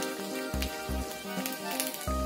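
Background music with a steady beat: held notes over a low bass pulse about twice a second.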